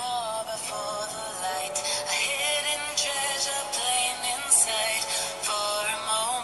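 A song with a high sung vocal melody over a full music backing, its audio deliberately made poor in quality.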